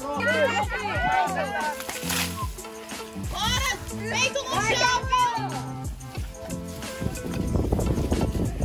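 Background music with a steady bass line and high voices over it. A rush of noise builds near the end.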